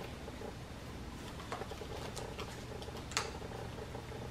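Small cardboard product packaging being handled and opened: light scattered clicks and taps, with one sharper click about three seconds in, over a steady low room hum.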